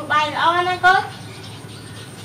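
A person's voice giving a short drawn-out call, rising then held for about a second, broken by a brief second burst at the end.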